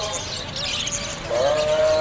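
Caged budgerigars chattering, with faint high chirps in the first half. A louder steady held tone, like singing or music, comes in just past the middle.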